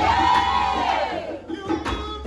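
A gospel singer belting one long held note into a microphone, its pitch arching up and then down before it breaks off about a second and a half in. Backing voices join in, over the band's steady beat.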